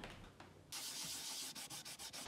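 Rubbing on a red oak board: a steady scratchy hiss that starts suddenly about two-thirds of a second in, breaking into a few short strokes near the end.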